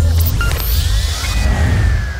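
Bass-heavy background music with a whoosh transition effect that swells in about half a second in, its pitch rising and then slowly falling away.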